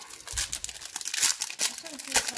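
A foil trading-card pack, Panini Contenders Draft Picks, being torn open at its sealed top and crinkled in the fingers. It makes a quick run of sharp crackles.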